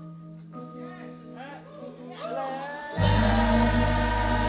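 Live indie rock band playing a quiet passage over a held low note, with gliding pitched lines above it. About three seconds in, the full band comes in loudly.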